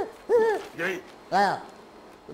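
A person's voice giving four short hooting calls, each rising and falling in pitch, about half a second apart.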